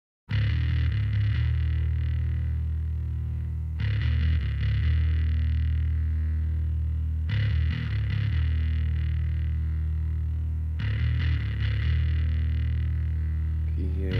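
Noise-rock song opening with a low, heavily distorted electric guitar riff that starts abruptly and repeats, with a new phrase striking about every three and a half seconds.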